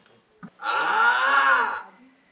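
A short knock, then a man's loud, drawn-out vocal cry lasting about a second, its pitch rising and then falling.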